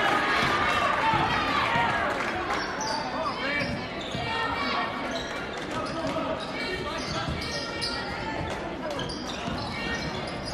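Basketball being dribbled on a hardwood gym court, with short high sneaker squeaks, over crowd chatter in a large echoing hall. The crowd noise eases down over the first few seconds.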